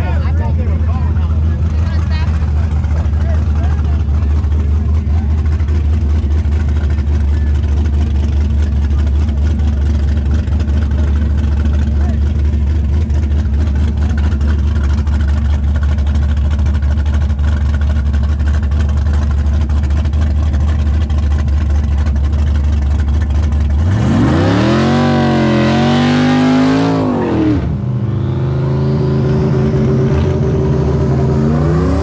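A drag car's engine idling loud and steady at the start line, then revving up hard and launching, its pitch climbing and wavering for about three seconds as it pulls away. Another engine idles near the end.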